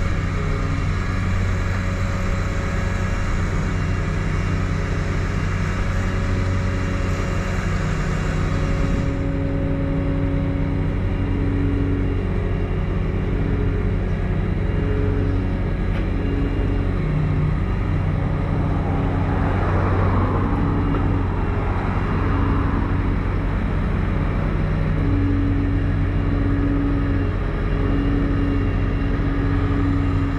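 A heavy vehicle engine running steadily at low speed as the self-propelled sand bedder creeps down the trailer ramps, with a short rushing noise about two-thirds of the way through.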